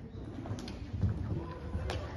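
A pony's hooves thudding softly in canter on the sand surface of an indoor arena, with a couple of sharper knocks.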